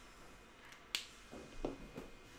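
A single sharp click about a second in, followed by a few soft knocks, from small objects being handled at a desk.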